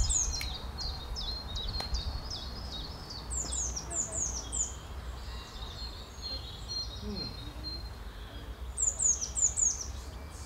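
A small songbird sings runs of quick, high notes that each fall in pitch, with the loudest run near the end. A steady low outdoor rumble lies underneath.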